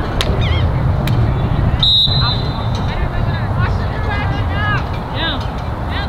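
A referee's whistle blown once, briefly, about two seconds in, among high-pitched shouts from players and spectators over a steady low rumble.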